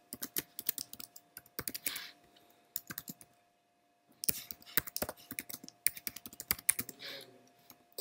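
Typing on a computer keyboard: runs of quick key clicks, broken by a pause of about a second midway, over a faint steady hum.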